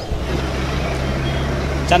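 Steady low hum and rumble of outdoor background noise, with faint indistinct voices; a man starts speaking right at the end.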